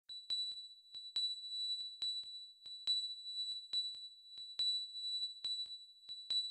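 Opening of an electronic music track: a steady, high-pitched synthesized tone held under sharp clicks that fall in little groups of two or three, the strongest click recurring a little under once a second.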